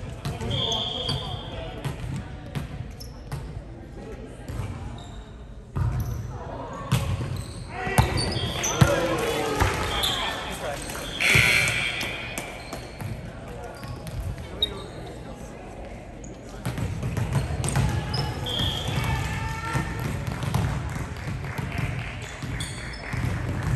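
Indoor volleyball play in a large gym: players' voices and calls, several sharp ball contacts from about eight to twelve seconds in, and short high squeaks.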